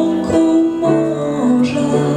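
Female jazz vocalist singing into a microphone, holding long notes, accompanied by an upright piano.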